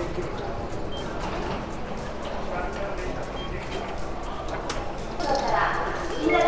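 A touchscreen ticket machine gives a couple of short beeps as fare buttons are pressed. Behind them runs a steady background of voices and music.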